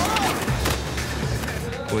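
Fight-scene soundtrack: a quick run of punch and kick hits over background music, with a brief voice near the start. Speech begins at the very end.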